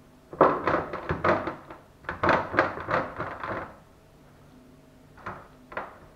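Hand-turned pepper mill grinding black pepper over raw pork, in two bursts of rapid clicking about a second and a half each, followed by a couple of lighter knocks near the end.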